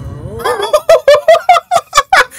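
A man laughing hard into a close microphone: a fast run of short, high-pitched bursts of laughter that starts about half a second in.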